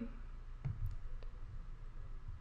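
A few faint computer mouse clicks over low room noise.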